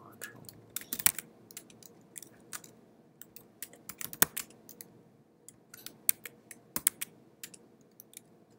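Typing on a computer keyboard: irregular clusters of keystrokes with short pauses between, a few keys struck noticeably louder than the rest, about a second in, about four seconds in and near seven seconds.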